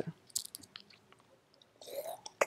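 Faint mouth clicks and lip smacks close to the microphone, with a short breath near the end.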